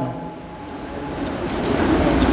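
A man's voice trails off, then a low rushing noise swells steadily on the close microphone.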